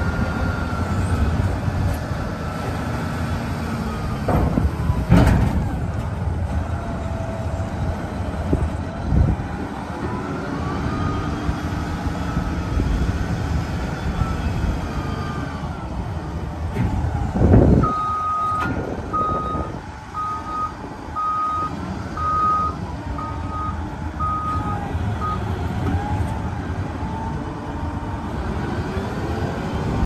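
Caterpillar 735C articulated dump truck's diesel engine running steadily while the dump body is lowered, with a few sharp knocks. About two-thirds of the way in, its reverse alarm beeps about eight times, roughly once a second.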